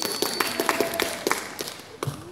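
A quick, uneven run of sharp clicks and taps, with a high steady electronic beep that stops about half a second in and a lower steady tone under the clicks in the middle.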